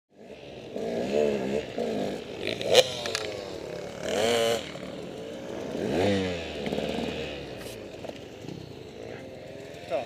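Off-road motorcycle engine revving up and down over and over as it is ridden on the course, with a sharp click a little under three seconds in.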